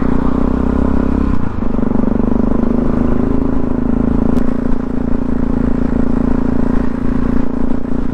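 Supermoto motorcycle engine running steadily at cruising speed on an open road, heard from a helmet camera with wind and road noise over it. The low engine note changes about one and a half seconds in.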